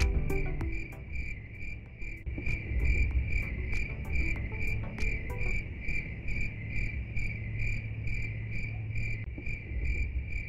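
Insects chirping: a high chirp repeating steadily about two and a half times a second over a low rumble. The tail of some music stops within the first second.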